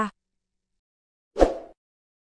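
A single short pop sound effect about one and a half seconds in, dying away quickly: the pop of a subscribe-button animation appearing on screen.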